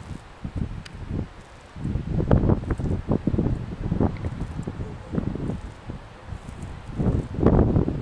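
Wind buffeting the microphone in gusts, a low rumbling noise that swells strongly about two seconds in and again near the end.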